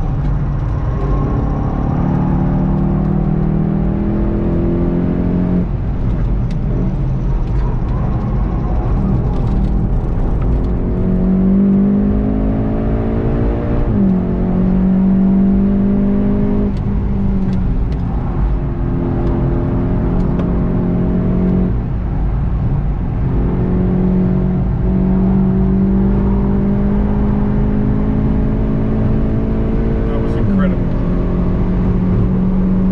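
Golf 7.5 GTI TCR's turbocharged four-cylinder engine under hard acceleration, heard inside the cabin over tyre and road rumble. Its pitch climbs steadily and drops sharply at gear changes several times, about 14, 22 and 30 seconds in.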